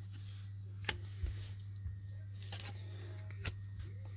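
Baseball cards being handled and laid down on a tabletop: a handful of light taps and slides of card and plastic sleeve, over a steady low hum.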